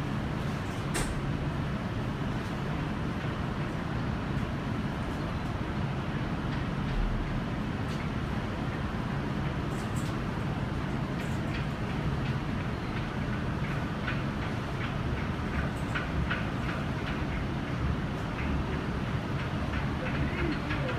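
Steady low rumble with a hiss over it, with a few faint clicks.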